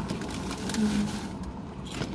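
Plastic snack packaging rustling and crinkling in hands, with a short hummed "hm" about a second in.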